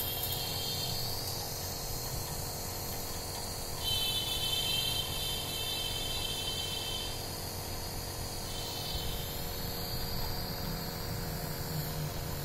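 Omron CompAir Eco NE-C302 compressor nebulizer running, its compressor giving a steady buzzing hum with a hiss of air through the medication cup and mask.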